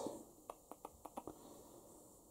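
A run of about six faint, sharp clicks in quick succession, then near silence.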